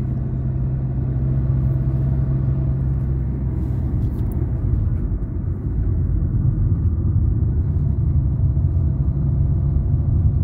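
Car driving, heard from inside the cabin: a steady low rumble of engine and tyres on the road.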